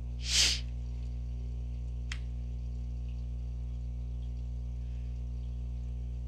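A steady low hum, with one short breathy burst about half a second in and a faint click about two seconds later.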